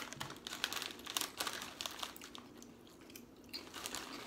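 Potato chip bag crinkling as it is handled. There is a quick run of crackles for about the first two seconds, fewer after that, and a few more near the end.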